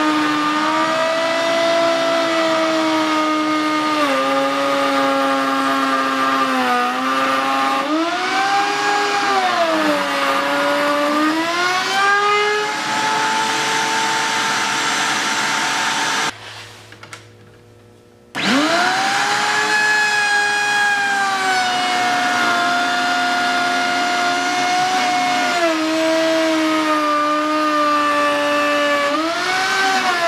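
Table-mounted router with a core box bit cutting a half-round groove through a block of wood. The motor's whine drops in pitch and recovers as the bit bites into the wood. About 16 s in it stops for about two seconds, then starts again and spins back up for the second pass.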